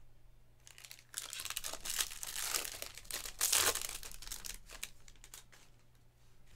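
A shiny foil trading-card pack wrapper being torn open and crumpled, a run of crinkling and crackling that starts about a second in, is loudest in the middle and dies away near the end.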